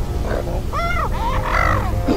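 Growling kaiju vocalizations standing in for Godzilla's speech: a few short calls that rise and fall in pitch, over a steady low rumble.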